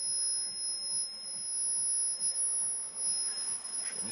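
Steady high-pitched whine over a faint even hiss from a pulsed high-voltage circuit, an ignition coil firing through a spark gap, as it drives an energy-saving lamp tube.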